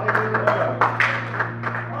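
Congregation clapping their hands in irregular, scattered claps, with a few brief voices and a steady low hum underneath.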